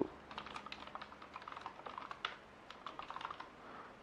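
Typing on a computer keyboard: a quick, irregular run of faint key clicks as a terminal command is entered.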